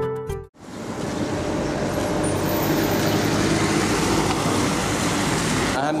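A musical jingle ends abruptly about half a second in. After that comes a steady background noise like road traffic, until a man starts to speak at the very end.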